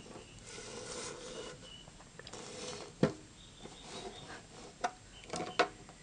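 A homemade sheet-metal inverter housing being handled and turned around on a concrete floor: faint rubbing and scraping with a few sharp knocks, the loudest about three seconds in.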